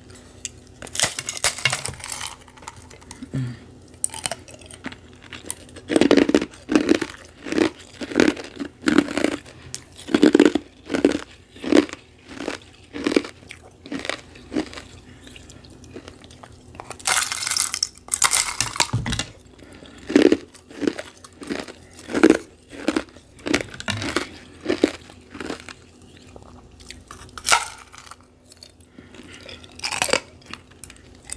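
Close-miked mouth crunching and chewing of carbonated ice pillows, frozen sparkling water full of bubbles that breaks crisply. There are steady crunches about two a second, with two longer, crisper bursts about a second in and again around 17 seconds in.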